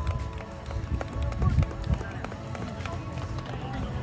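Voices of ballplayers milling about on the field during the post-game handshake, with music playing in the background and a low rumble underneath.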